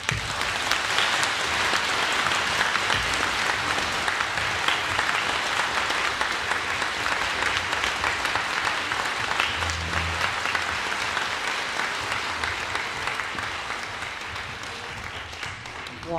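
Audience applauding, starting abruptly and slowly thinning out toward the end.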